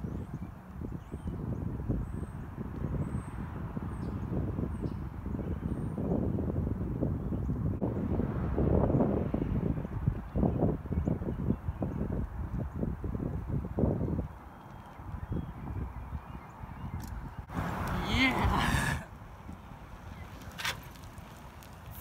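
Strong wind buffeting the microphone, a gusty low rumble that eases about two-thirds of the way through. Near the end comes one brief, loud call with a wavering pitch.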